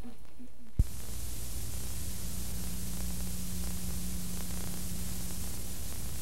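Steady static hiss with a low electrical hum from an old videotape recording, starting with a sharp click about a second in where the recording cuts over.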